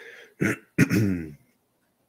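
A man clearing his throat: a short rasp about half a second in, then a louder, longer voiced one falling in pitch.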